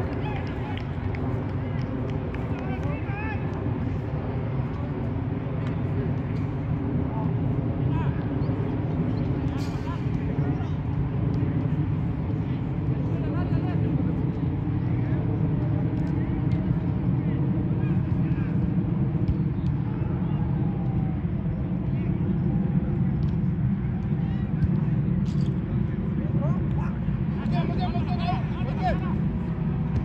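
Faint, distant shouts and talk from players on a soccer pitch over a steady low rumble.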